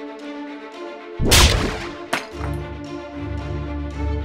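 Film-score music with sustained string tones, cut through about a second in by a loud, sudden crack-like impact effect that rings on for about half a second, followed shortly by a second, sharper snap. Deep bass joins the music just after.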